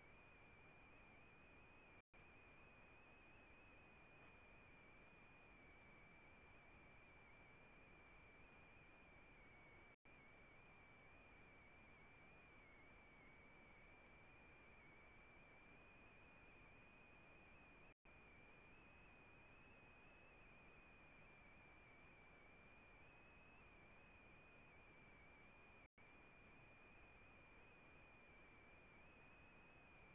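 Near silence: a faint hiss with a thin, steady high-pitched whine, cut out briefly about every eight seconds.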